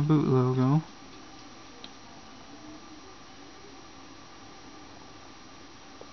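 A man's short wordless voice sound, a held, hum-like utterance that ends just under a second in. After it there is only faint steady room hiss, with one small click about two seconds in.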